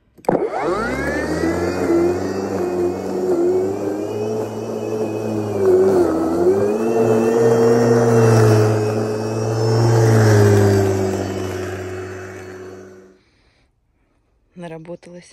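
Cordless battery lawn mower's electric motor and blade spinning up with a sharp rising whine, then running steadily. Its pitch dips briefly about halfway through, and it winds down and stops near the end.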